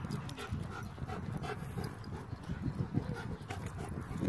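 A dog panting, about three short breaths a second, over irregular low thumps.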